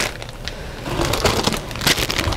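Clear plastic parts bags crinkling and rustling as they are handled, with a sharper crackle about half a second in and another near the end.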